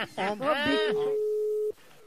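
Telephone ringback tone heard down the line: one steady beep of about a second, the outgoing call ringing before it is answered. A short burst of voice comes before it.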